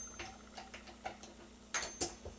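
Faint metallic clicks and ticks from an RCBS Primer Pocket Swager Combo-2 as its handle is worked, swaging the military crimp out of a brass case's primer pocket, with a louder click near the end.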